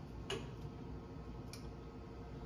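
Two short clicks about a second apart, the first louder, over a steady low room hum.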